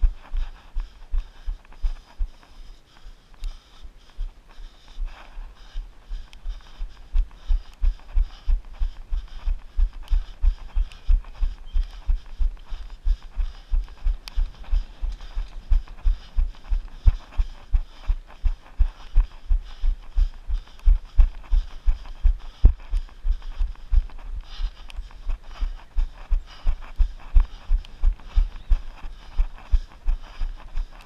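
A runner's footfalls on grass and pavement, picked up through a body-worn camera as regular low thuds about three a second, louder from about seven seconds in.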